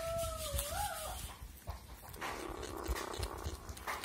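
Young mongooses feeding on rats: a wavering, whine-like call about a second long at the start, then chewing with scattered low knocks, clicks and rustles.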